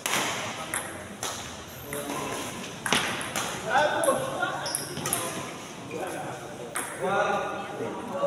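Badminton rackets striking a shuttlecock in a men's doubles rally: several sharp pings over the first few seconds and one more near the end, ringing in a large hall.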